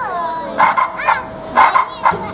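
Young children riding a frog hopper ride, squealing and shrieking in short high-pitched cries that bend up and down in pitch.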